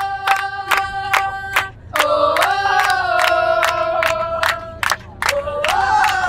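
A group of women chanting in unison, holding long notes in phrases of a few seconds, while clapping a steady beat of about four claps a second.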